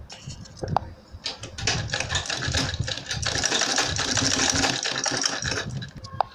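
Domestic straight-stitch sewing machine stitching two layers, PVC leather and its lining, together in a fast, even run of needle strokes. The run starts about a second in and stops just before the end, after a single click and some handling of the fabric.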